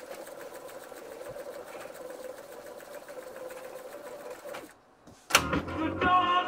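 Astra 111s-1 reel-to-reel tape recorder fast-winding its tape: a steady mechanical whirr with a faint held hum, which stops about five seconds in. A loud click of a transport key follows, and music from the tape starts playing just before the end.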